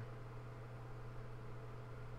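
A pause between spoken remarks, holding only a steady low hum and faint room noise.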